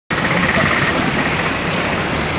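Fast-flowing floodwater rushing, a loud steady noise.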